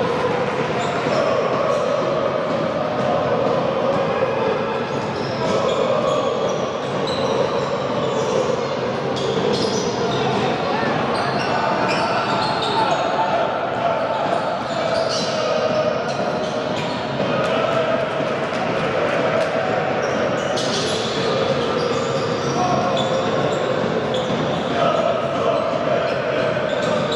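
Basketball being dribbled on a hardwood court during live play, with players' shoes squeaking and voices carrying through a large hall.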